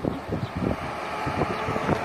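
Wind buffeting the microphone over the noise of road traffic, with a faint steady hum from a vehicle coming through in the second half.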